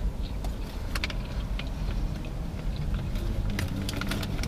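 A few sharp little clicks and crunches of a hard candy being chewed, over a steady low rumble inside a car.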